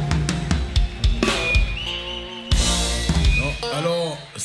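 Live band's drum kit playing the closing hits of a song: quick drum strokes, then two big crash-cymbal accents that ring out, the second coming after a brief stop.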